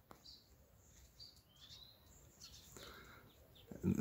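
Faint birds chirping: a few short high calls, one a brief gliding whistle about halfway through, over quiet outdoor background.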